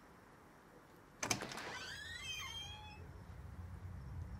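A sharp click about a second in, then a door hinge creaking open in a high, wavering squeal that glides down and up for about a second and a half, over a low rumble that grows louder toward the end.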